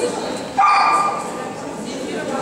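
A small dog gives one short, high-pitched yip about half a second long, starting about a third of the way in, over background chatter.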